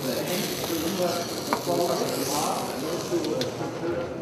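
Leek sizzling as it caramelises in a hot stainless steel frying pan, with a couple of sharp clicks, under a chatter of voices.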